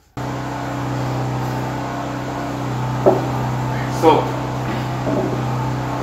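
Generator engine running steadily with a constant low hum, not yet loaded because its output breakers to the inverters are still off. The hum cuts in suddenly just after the start, with a brief knock about three seconds in.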